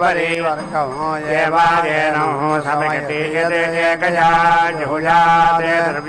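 A male voice chanting Sanskrit Vedic mantras in a continuous, melodic recitation with no pauses.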